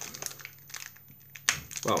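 Small plastic parts packet crinkling as fingers work it open, with a sharp snap about one and a half seconds in.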